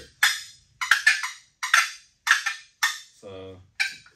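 Wooden turkey box calls tapped to make short, sharp hen clucks, about seven in uneven succession from more than one call.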